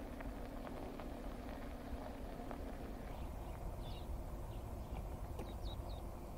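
Outdoor bush ambience: a steady low rumble, with small birds chirping in short high notes from about four seconds in.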